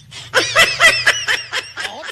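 Laughter: a quick run of short laughs, beginning about a third of a second in and lasting nearly to the end.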